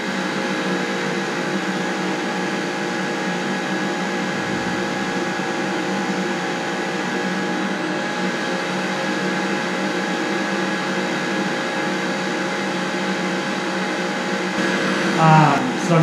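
Steady mechanical hum of a running motor, an even whirring noise with a constant whine over it that neither rises nor falls.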